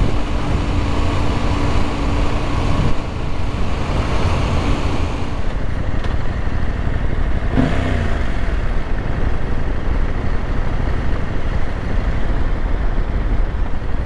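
Husqvarna Norden 901's parallel-twin engine running steadily under way, heard from the bike with continuous wind and road noise. A steady engine hum sits under the noise for the first few seconds. A brief rise and fall in pitch comes about halfway through.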